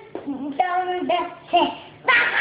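A young child singing a short sing-song phrase in a few held, level notes.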